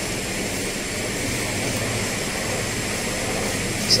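Air handling unit running: a steady rush of fan and moving-air noise with a low hum.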